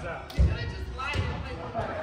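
A volleyball bouncing once on a hardwood gym floor, a single loud thump about half a second in, with players' voices in the background.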